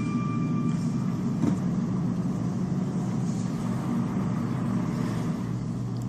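Steady low rumbling background ambience.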